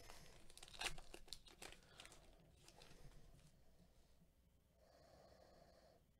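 Foil trading-card pack wrapper being torn open and crinkled: a faint run of sharp crackles that thins out over the first few seconds.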